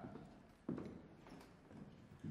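Faint room sound with one sharp knock about two-thirds of a second in, fading away afterwards.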